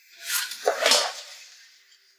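A woman's distressed breathing: a short sharp breath about a third of a second in, then a louder, longer one just under a second in.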